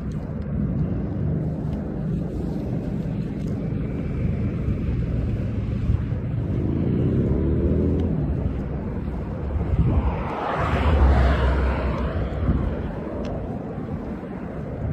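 Road traffic on a wide multi-lane road: a steady low rumble, with a passing vehicle's pitch sweeping about halfway through and a vehicle going by loudest at about ten to twelve seconds in.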